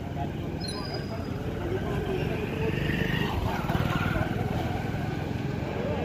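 A motorbike engine running close by, growing louder in the middle, with indistinct voices of people talking over the street noise.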